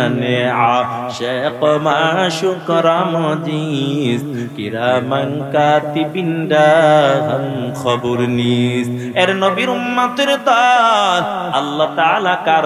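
A man's voice chanting a verse in a drawn-out melodic tune, holding long wavering notes with brief breaks, amplified through a microphone.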